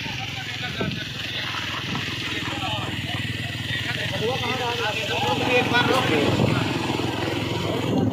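Several small motorcycles running steadily at low speed in a convoy, with people's voices over the engine noise from about two to six seconds in.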